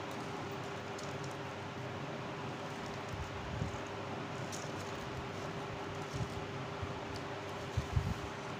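Steady background hiss with a constant low hum, like a running fan, and a few soft low knocks from paper strips being pressed and folded by hand on a table.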